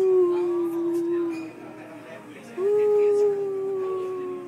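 A voice howling in two long held notes. The first sinks slightly in pitch and trails off about a second and a half in; the second starts abruptly a little over halfway through and carries on to the end.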